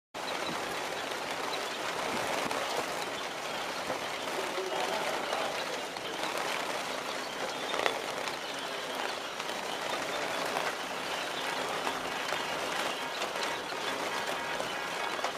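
A large flock of black-headed munias in an aviary: a steady, dense din of many small calls and wing flutters, with one sharp click about eight seconds in.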